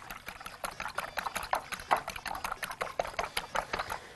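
Eggs being beaten with a metal fork in a glass bowl: rapid, irregular clicks of the fork against the glass and the wet slosh of the egg.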